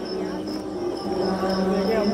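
Crickets chirping, a high, evenly pulsing trill, over a low steady hum.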